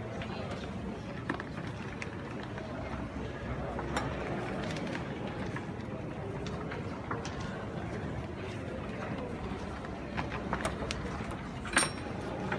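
Indistinct background chatter of many voices, with a few sharp clicks as table-football figures are flicked against the ball. The loudest click comes just before the end.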